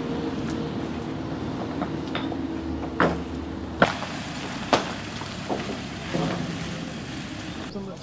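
Sharp clacks of stone on stone from paving-stone work, three about three, four and five seconds in, over a steady engine idle that fades out around the middle.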